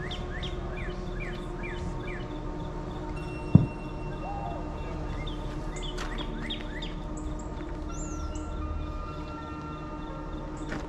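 Birds calling: runs of quick down-slurred chirps, about three a second, that come and go, with a high swooping whistle near the end. A single sharp click about three and a half seconds in is the loudest sound.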